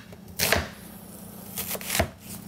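Chef's knife slicing through a red onion and striking a cutting board: one cut about half a second in and two more near the end.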